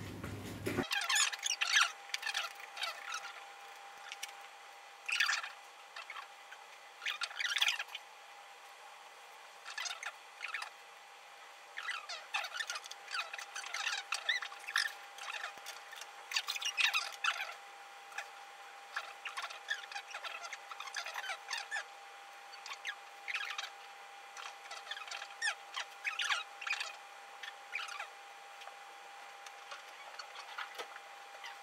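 Felt-tip marker nibs stroking across a shikishi board in short, irregular bursts every second or two, as colour is laid into an ink drawing. A faint steady high hum runs underneath.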